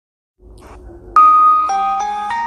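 TV sponsorship ident jingle of bell-like chime notes: a loud high note about a second in, then a lower note half a second later, each ringing on.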